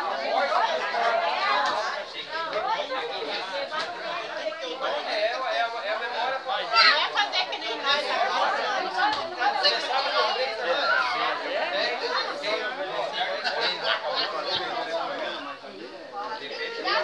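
Many people talking at once: overlapping chatter of a crowd of voices, none clear enough to make out words.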